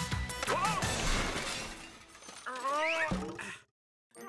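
Cartoon background music with rhythmic percussion and a clattering crash in the first second or so. A short rising cry follows about two and a half seconds in, then the sound cuts to silence just before the end.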